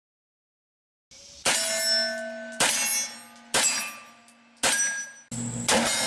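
A string of about six gunshots, roughly a second apart and starting about a second in, each followed by the ringing of steel targets being hit.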